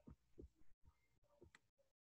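Near silence with a few faint, soft taps, and the sound cutting out entirely for brief moments near the end.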